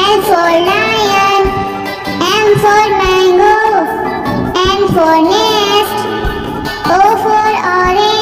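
A child's voice singing an alphabet phonics song over a backing track, one sung phrase after another, working through letter lines such as "L for lion", "N for nest" and "O for orange".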